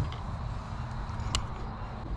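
Someone climbing into the cab of a 1952 Chevrolet one-ton truck: a knock at the start, then low shuffling and rumble with a light click about a second and a half in.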